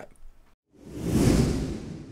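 Whoosh sound effect for a title-card transition. A rush of noise with a deep rumble under a hiss starts under a second in, swells to a peak, then fades away.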